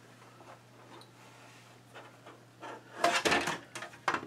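An LCD panel being pulled free of a monitor's plastic back housing: a quiet stretch of handling, then about three seconds in a quick flurry of plastic clicks, knocks and scraping as the panel comes loose.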